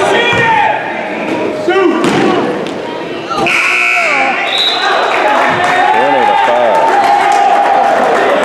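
Gym scoreboard horn sounding for about a second to end the quarter, amid voices and cheering in the hall.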